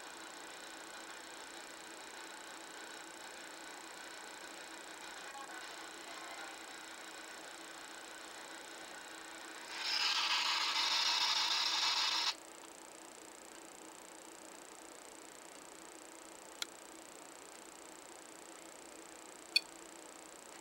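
Electronic alarm tone from a REM-POD's piezo buzzer, a buzzy tone of several pitches at once, sounding for about two and a half seconds about ten seconds in. It is the device's alert that it has been triggered. Two short sharp clicks follow near the end.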